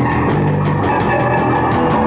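Live rock band playing loudly: electric guitar, bass guitar and drum kit, with frequent cymbal and drum hits.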